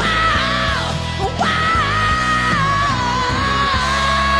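Male singer belting a heavy rock song into a handheld microphone over loud rock backing music: short phrases swooping in pitch, then one long high note held with a slight waver from about one and a half seconds in.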